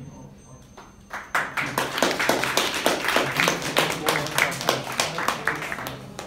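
Small audience clapping, starting about a second in and going on steadily.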